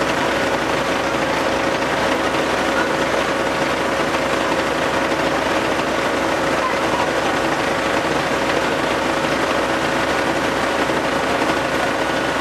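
Diesel engine of an aerial ladder fire truck running steadily, a constant dense mechanical noise with a faint steady whine in it.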